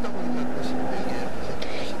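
A pause in speech filled only by steady background hiss of the recording, with a faint low hum in the first second.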